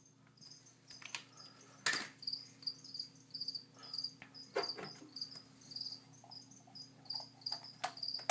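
A cricket chirping steadily, about three short chirps a second. Over it come a few sharp clicks and knocks of small plastic vials and lids being handled, the loudest about two seconds in.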